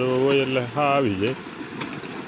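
A man's voice for about the first second, over the steady rush of water pouring from a pump pipe and the steady hum of the pump's engine; a couple of sharp knocks near the end, from hoes striking the soil.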